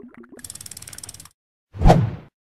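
Motion-graphics transition sound effects: a few short bubbly pops, then a rapid ratchet-like clicking for about a second, then one loud swooshing hit near the end.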